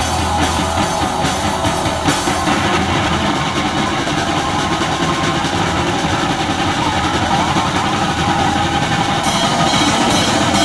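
Live rock band playing an instrumental passage through a small PA: electric guitars, bass guitar and drum kit. Cymbal strikes drop away after about two seconds and come back near the end.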